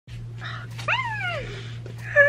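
A single short high-pitched whine that rises quickly and then slides down, a little under a second in, over a steady low hum.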